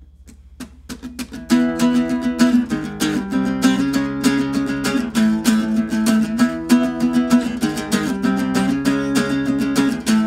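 Small-bodied Fender acoustic guitar: a few light single strums, then quick, even chord strumming from about a second and a half in, the instrumental opening of an upbeat song.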